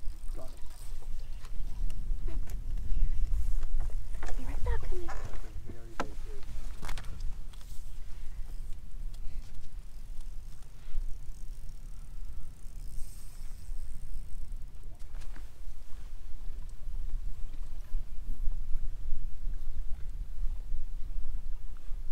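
Steady low rumble of wind and water against a fishing boat on open water, with a few brief mumbled words and scattered clicks and knocks.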